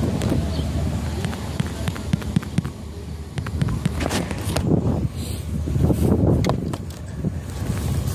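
Wind blowing on the microphone over the low rumble of a slow-moving vehicle, with scattered light knocks and louder gusts in the middle.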